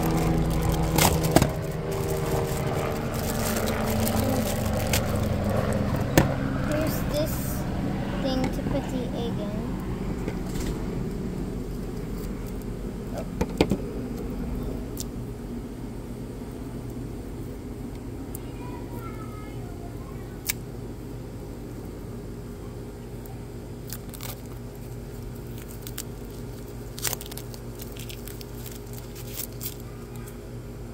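Clear plastic wrapping crinkling and hard plastic toy parts clicking and knocking as they are unwrapped and handled, with scattered sharp clicks throughout. A steady low hum runs underneath, louder in the first part and fading.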